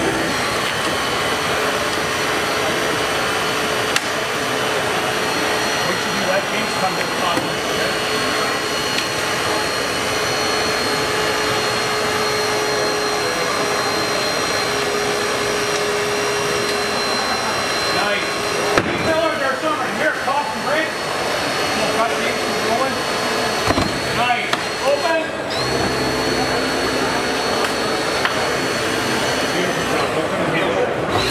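Battery-powered Hurst Jaws of Life hydraulic spreader running with a steady motor-and-pump whine as it spreads the car door open. The whine cuts out briefly twice in the second half and starts up again.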